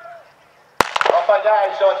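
Starter's pistol fired once for a sprint start: a sharp crack about a second in, followed by a couple of quick echoes.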